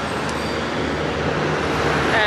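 Street traffic: a steady wash of road noise from passing cars.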